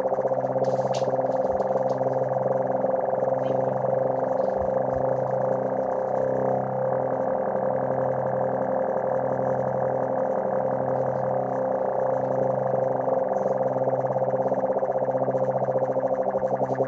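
Electronic keyboard sustaining a droning chord: a steady held upper note over low tones that pulse slowly and evenly.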